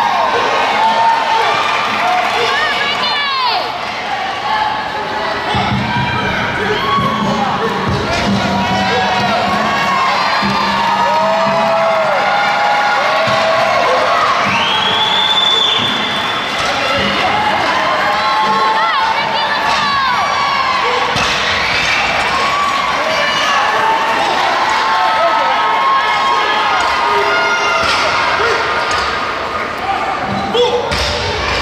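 A crowd of teammates and spectators cheering and shouting continuously in a large hall, with bumper-plated barbells now and then thudding onto the floor.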